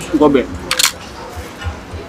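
A man's brief wordless vocal sound, followed just under a second in by a short, sharp hiss-like noise, over faint background music with a low beat.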